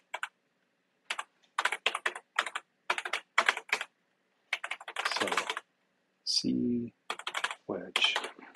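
Typing on a computer keyboard in short bursts of rapid keystrokes with brief pauses between them, as text is edited. A short murmur of voice comes about two-thirds of the way through.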